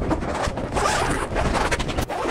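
Zippers on a grow tent's heavy fabric body being drawn closed, with the fabric rustling as it is pulled over the frame: a continuous rasping through the two seconds.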